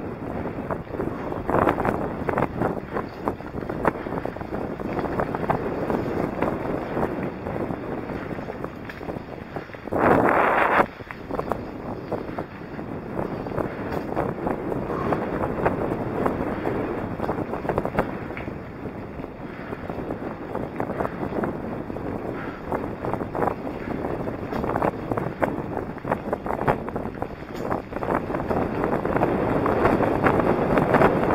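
Wind buffeting the microphone of a camera on a mountain bike riding a dirt trail, mixed with tyre rumble and frequent small rattles from the bumpy ground, with one sharp louder gust or jolt about ten seconds in.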